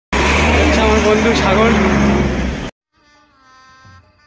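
Roadside traffic noise with a heavy low rumble and faint wavering voices, cutting off suddenly after about two and a half seconds. Faint music follows near the end.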